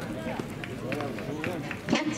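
Several voices calling out across a baseball field, overlapping shouts and calls of players or spectators, with a few faint clicks. A louder shout begins right at the end.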